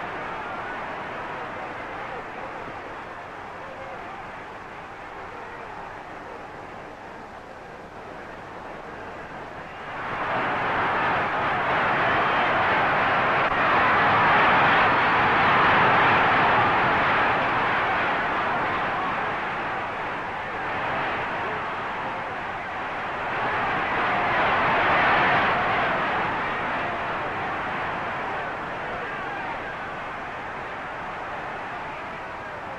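Boxing crowd noise on an old fight-film soundtrack. A steady murmur jumps sharply to loud shouting about ten seconds in, eases off, then swells again near twenty-five seconds.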